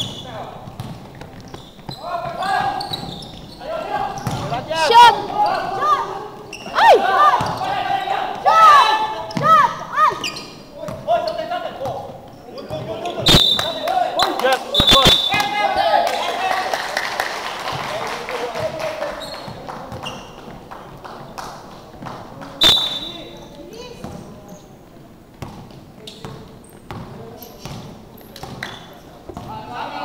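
Basketball players shouting and calling out over each other in a gym, with a ball bouncing on the hardwood court now and then. A few sharp slaps with short high squeaks come in the middle, and clapping follows just after.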